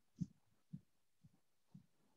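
Near silence with faint, short, low thuds repeating about twice a second.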